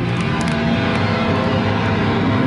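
Live hardcore punk band: distorted electric guitar and bass held in a loud, sustained wall of noise, with a few cymbal crashes in the first half second and no drum beat after.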